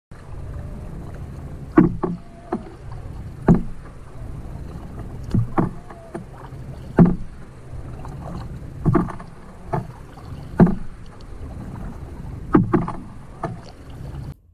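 Double-bladed paddle strokes in a canoe, alternating sides, each stroke heard as a sharp hit, about one every one to two seconds and sometimes two in quick succession. A steady low rumble of wind on the microphone runs underneath.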